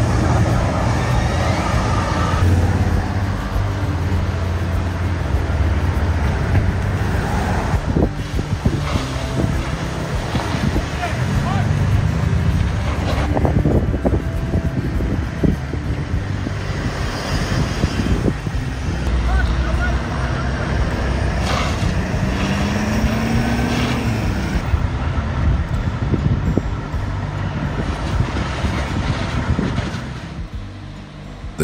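Road traffic and running truck and fire-engine engines at a roadside, a steady low rumble, with a short rising whine about three-quarters of the way in.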